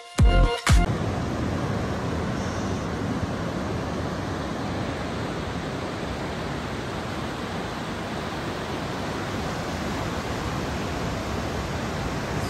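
Ocean surf breaking on a sandy beach: a steady, even rush of waves. An electronic dance music track cuts off in the first second.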